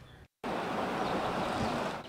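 A brief dead silence at the cut, then steady outdoor background noise from about half a second in: an even rushing hiss with no distinct events, like wind or distant traffic.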